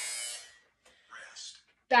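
Interval workout timer's electronic buzzer giving a steady buzz that cuts off about half a second in, marking the end of a work interval.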